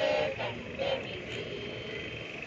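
A group of people singing together in unison, the phrase trailing into a long steady note.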